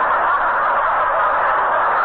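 Studio audience laughing, a long steady wave of crowd laughter, heard through a narrow-band old radio broadcast recording.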